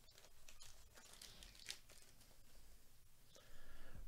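Faint crinkling and tearing of a foil baseball-card pack wrapper being torn open and handled.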